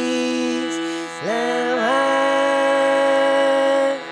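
Slow singing in long held notes, each note sliding up into pitch, over a steady reed drone. One note is held for the first second, a second note slides in just after and is held until it stops abruptly near the end.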